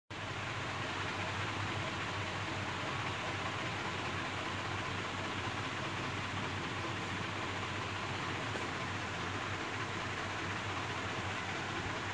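Steady, even background hiss with a low hum underneath, without any distinct events.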